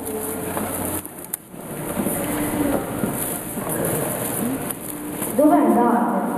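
Speech only: low, indistinct children's voices, then a child's voice coming in louder through the microphone a little after five seconds in.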